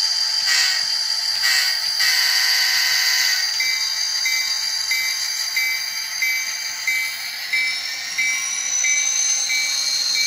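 N scale model train running on the track, its small locomotive motor giving a steady high-pitched whine, with a second, higher whine climbing in pitch near the end. A short beep repeats evenly about every two-thirds of a second from a few seconds in.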